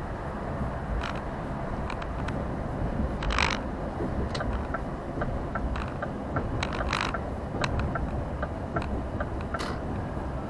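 Lorry cab interior on the move: steady low engine and road rumble with repeated sharp clicks and rattles. There is a short rattling burst about three seconds in, and a run of evenly spaced clicks in the second half.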